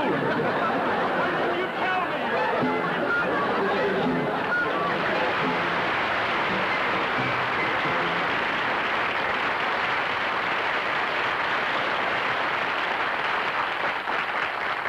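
Studio audience applauding and laughing, a steady, dense applause through most of it, with band music playing under it in the first few seconds.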